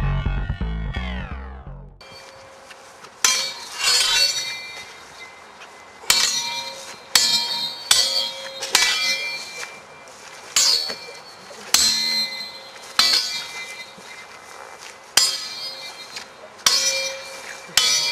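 Steel sword blades clashing: about a dozen sharp metallic clangs at uneven intervals, each ringing briefly, beginning about three seconds in. Music fades out at the start.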